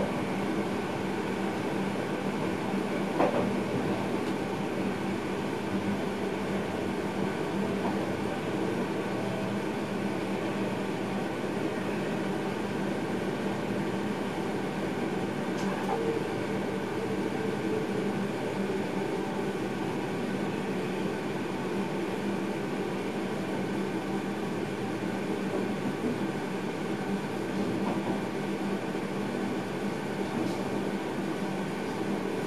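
Electric passenger train running, heard inside the driver's cab: a steady rumble of wheels on rail with a constant hum. A couple of sharp clicks stand out, one about three seconds in and another around sixteen seconds.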